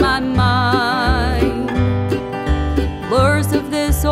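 Bluegrass band playing an instrumental passage: upright bass notes pulsing about twice a second under acoustic guitar, with a held lead melody that wavers with vibrato and slides upward near the end.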